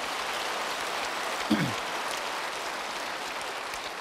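Large audience applauding, a steady wash of clapping. A single brief voice sounds over it about one and a half seconds in.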